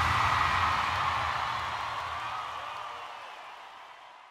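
Fading tail of an electronic dance music track after its final hit: a sustained, reverberant wash with a faint held tone, dying away steadily over a few seconds.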